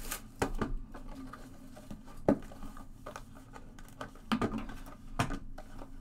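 A few scattered light knocks and taps as a cardboard trading-card box is handled and its boxed packs are set down on a table, the sharpest knock a little over two seconds in.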